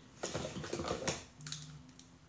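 A quick flurry of small clicks and rustling from hands handling something close to the microphone, followed by two short clicks.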